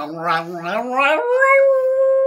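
Dog howling: one long howl that rises in pitch over the first second and then holds a steady tone, with a lower human voice sounding along with it at the start.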